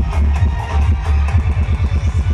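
Loud electronic dance music with heavy bass, played over a DJ sound system. In the second half the bass beats quicken into a rapid roll.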